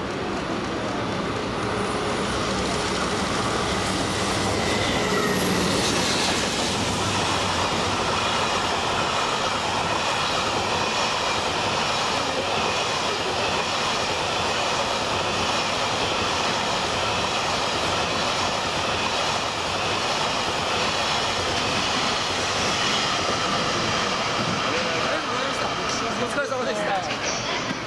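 A JR Freight DD200 diesel-electric locomotive passes at speed, hauling a long train of Koki 107 container wagons. The wheels run over the rails with a steady, loud rolling noise as wagon after wagon goes by.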